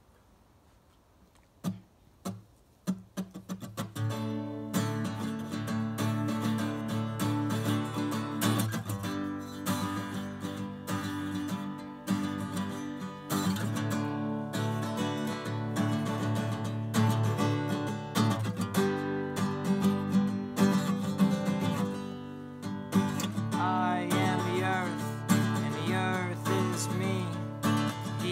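Acoustic guitar playing an instrumental intro: a few single plucked notes about two seconds in, then a continuous picked and strummed chord pattern from about four seconds on.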